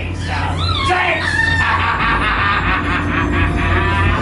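High-pitched voices shrieking and calling out over a steady low drone.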